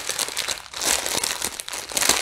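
A clear plastic bag crinkling irregularly as hands handle it to get at the contents.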